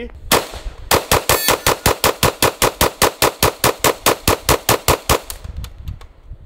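FN PS90 carbine firing 5.7×28mm rounds: one shot, then a long, fast string of evenly spaced shots, about seven a second, that stops about five seconds in.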